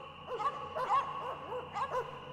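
Dogs barking and yipping excitedly in a quick run of short calls, about six in two seconds.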